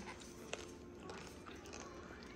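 Quiet room tone with a faint steady hum and one faint click about a quarter of the way in.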